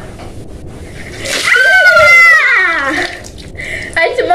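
A bucket of water dumped over a girl's head, splashing about a second in, and she lets out a loud, high-pitched cry that lasts about a second and a half and falls away.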